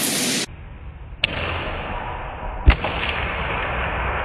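A few sharp knocks over a steady hiss: a horsebow shot and a padded arrow striking a sword blade. The loudest knock comes a little under three seconds in.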